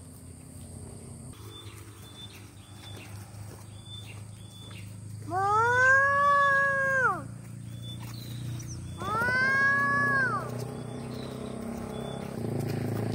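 Cattle mooing: two long calls a few seconds apart, each rising then falling in pitch. Faint short chirps sound in the background.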